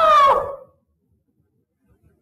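A male singer's voice in Sindhi devotional (maulood) singing ends a long held note, its pitch dipping as it fades out within the first half second. A silent gap follows until the end.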